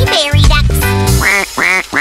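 Bouncy children's song music, then three short cartoon bird calls in quick succession, one for each of three counted birds. Each call rises and falls in pitch.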